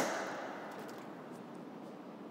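The fading end of a clunk from a minivan seat being folded down. It dies away within about half a second into a faint, steady hiss.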